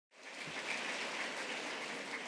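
Audience applauding, a steady wash of many hands clapping that fades in just after the start.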